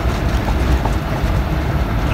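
Steady low rumble of a semi truck's running engine, heard from inside the cab, with a few faint ticks and rattles.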